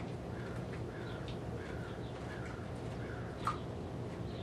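Faint bird chirps repeating over a steady low background hum, with one sharp click about three and a half seconds in. The click is a handheld training clicker marking the horse's correct behaviour.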